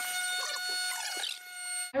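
A steady high whistling squeal, air escaping through the stretched neck of an inflated Super Wubble bubble, which cuts off suddenly just before the end.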